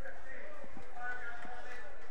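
Stadium ambience: faint distant voices over steady crowd noise, with a couple of light ticks just under a second in.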